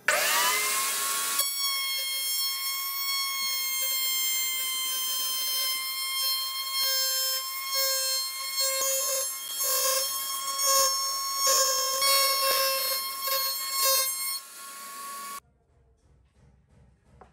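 Table-mounted router switched on, its whine climbing within about a second to a steady high pitch. Then it cuts into a hardwood ring fed around the bit, with uneven louder bursts of cutting noise. The sound stops suddenly near the end.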